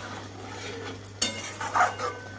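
Metal spatula stirring through thick gravy in a metal kadai, with a couple of sharp clinks and scrapes against the pan about a second in.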